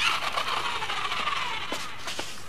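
A toy robot dog moving on a wooden floor: a mechanical whirring sound effect that starts suddenly, its pitch falling slowly, with a few light clicks near the end.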